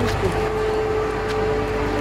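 A steady background hum with one faint held tone over an even hiss, with a short spoken "Let's go" at the very start.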